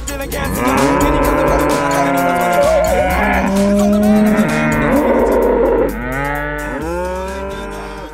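Cattle mooing, many drawn-out moos overlapping over a steady low bass of a music track, fading out over the last couple of seconds.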